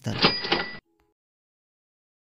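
Slideshow sound effect marking the correct answer: a short ring over a rattle, lasting under a second.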